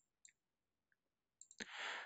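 A sharp computer mouse click, with a fainter click a moment later, otherwise near silence. A soft breath comes near the end.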